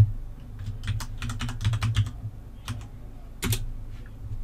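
Typing on a computer keyboard. A sharp click at the start is followed about half a second in by a quick run of keystrokes, then two more single key presses near the end.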